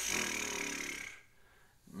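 A man's raspy, rattling vocal sound from the throat, a short growl about a second long that fades out.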